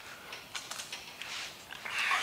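Faint clicks and rustling of a hand-held air sander being handled while switched off, with a soft scrape near the end.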